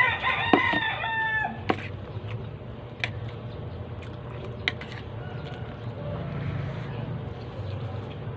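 A rooster crows once at the start, a single call of about a second and a half, followed by a few sharp clicks of a metal spoon against the rice plate.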